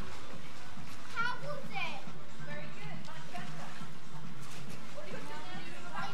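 Voices at a swimming pool, with a child calling out in rising and falling pitch about a second in, over steady background music.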